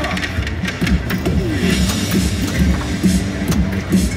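Hot Wheels pinball machine playing its game music with a steady repeating beat, mixed with frequent short sharp clicks.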